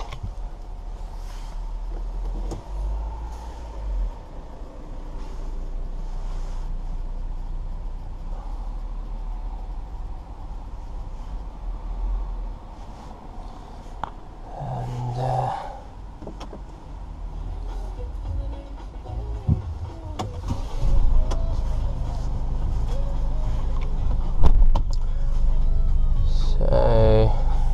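Inside the cabin of a Mercedes V250 camper van: a steady low hum with scattered knocks and handling noises. From about twenty seconds in the hum grows louder and fuller as the van's engine runs, with a sharp knock shortly before the end.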